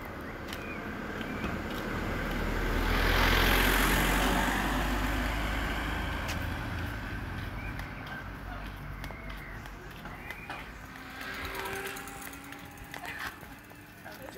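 A road vehicle driving past on the street. Its engine and tyre noise swells to a peak a few seconds in and then slowly fades away.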